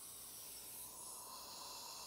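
Dental equipment running at an implant site: a faint steady hiss with a thin steady whine in it, from the dental suction and the slow-speed implant drill handpiece starting the pilot hole.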